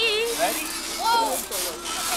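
Voices of children and adults: short, high-pitched calls and chatter, with no clear words.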